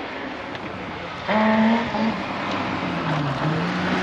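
BMW 325i rally car's straight-six engine coming in about a second in and growing louder as it approaches, its pitch dipping and rising several times.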